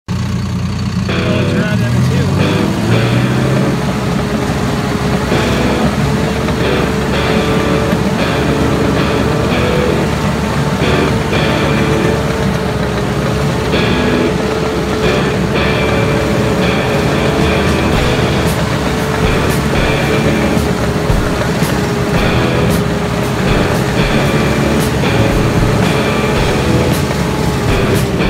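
Crawler dozer's diesel engine running steadily and hard, heard from the operator's seat, over intermittent squeaks and sharp clanks from the steel tracks as the machine crawls down a steep slope. The clanks come more often in the second half.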